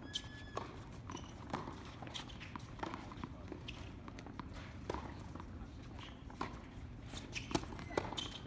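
Scattered sharp knocks of a tennis ball on a hard court over faint background voices, as a player bounces the ball before serving. Near the end comes a louder racket strike on the serve.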